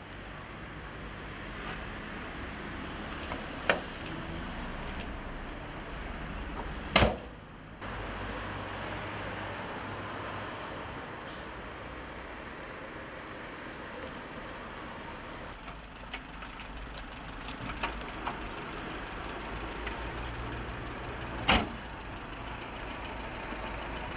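A car engine running amid steady street noise, broken by a few sharp knocks: the loudest about seven seconds in, another near the end.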